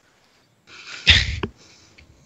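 A single sharp burst of breath blown into a headset microphone about a second in, with a loud rumble of air on the mic at its peak.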